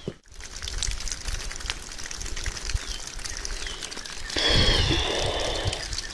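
Rustling and scattered light clicks, then from about four and a half seconds in, a little over a second of water pouring and splashing as a small flint point is rinsed off in the hand.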